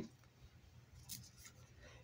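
Near silence, with a faint brief rustle about halfway through as a plastic-sleeved trading card is handled.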